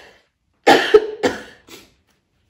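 A crying woman coughing into a tissue held over her nose and mouth: two loud coughs about a second in, then a fainter third.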